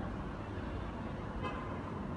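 Steady low background rumble with no voice, heard in a pause between sung phrases of the call to prayer.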